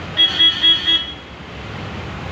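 A vehicle horn honked four times in quick succession in the first second, short loud toots at a steady pitch, over the low hum of idling and slow-moving traffic.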